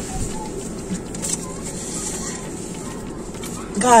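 Steady low background noise with faint, brief snatches of distant voices.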